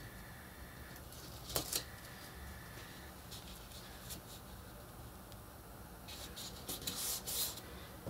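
Quiet handling of chipboard and cardstock on a cutting mat as two chipboard pieces are butted together and pressed down onto a joining strip. There is one short tap or rustle about a second and a half in, and soft paper rustles near the end.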